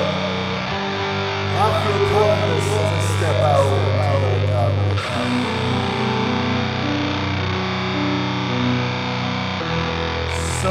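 Heavy crust punk music: distorted electric guitar and bass holding long chords. A voice runs over it in the first few seconds, and the chords change about five seconds in.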